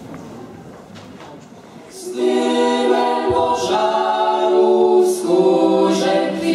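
A teenage a cappella vocal ensemble starts singing about two seconds in, holding slow, sustained chords, with a short pause for breath near the end. Before the singing there is only quiet room noise.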